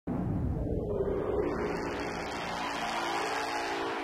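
Synthesized logo intro sting: a rushing noise wash with a few held low tones underneath, the noise thinning out as the tones come forward, cutting off abruptly near the end.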